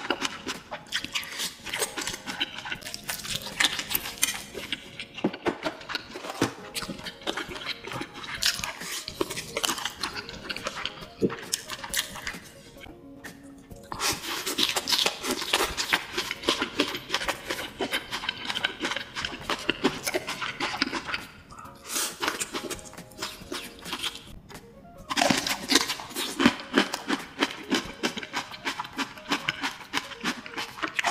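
Close-miked eating of fried rice: wet chewing and lip smacking make a rapid run of clicks. The run pauses briefly about twelve seconds in and again near twenty-four seconds.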